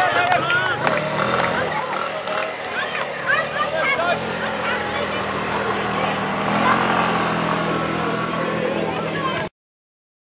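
Rugby players and onlookers calling and shouting on the field over a steady low engine-like hum. The sound cuts off suddenly near the end.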